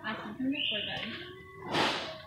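Store ambience: faint background voices with a short rush of noise near the end.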